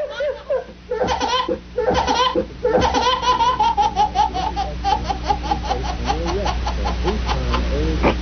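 A baby laughing hard. Short laughs at first, then a long unbroken run of quick, evenly repeated laughs from about three seconds in.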